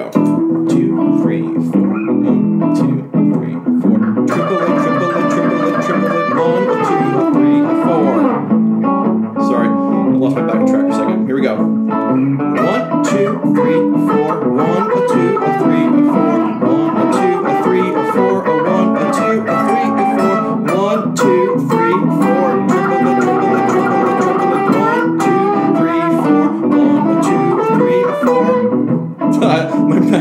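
Electric guitar playing an improvised blues solo on the pentatonic scale, its phrases mixing quarter notes, swing eighths and triplets.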